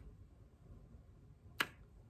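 Quiet room tone broken by a single sharp click about one and a half seconds in.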